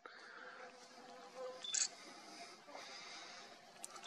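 Faint shutter clicks from a Nikon Coolpix P900 camera shooting a time-lapse, over a quiet background hiss: one just under two seconds in and a sharp one near the end.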